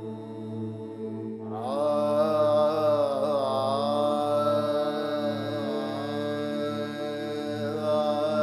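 Devotional chant music: a steady low drone, joined about one and a half seconds in by a voice singing long, wavering held notes.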